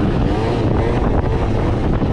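Piaggio Zip scooter's two-stroke engine, tuned with a 70 cc DR cylinder kit and Arrow Focus exhaust, running steadily at speed on the road. Heavy wind buffets the microphone over the engine.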